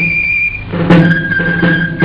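Basque folk dance music: a high pipe melody holding a long note, then a sharp drum stroke about a second in, after which the tune carries on over a steady low accompaniment.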